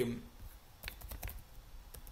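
Computer keyboard typing: a quick run of light keystrokes starting about a second in.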